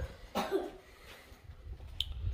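A man coughs once, a short rough cough about half a second in.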